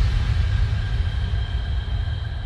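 Intro sound effect: a deep low rumble with a faint high ringing tone, fading out steadily.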